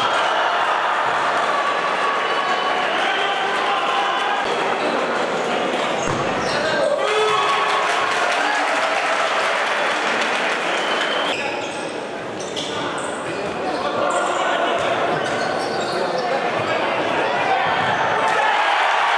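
Spectators' voices and shouting echoing around an indoor sports hall, with the thuds of a futsal ball being kicked and bouncing on the court. The crowd noise dips briefly about twelve seconds in.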